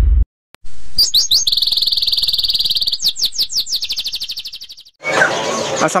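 Songbird singing: a fast trill of rapidly repeated high chirps, broken twice by quick downward-sweeping notes, then fading out.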